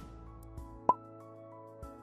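A single short, loud pop sound effect about a second in, the kind that goes with an animated subscribe button popping onto the screen. It plays over soft background music with sustained notes.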